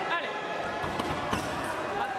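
Sabre fencers' shoes squeaking and stamping on the piste as they move in to attack, with two sharp knocks around the middle.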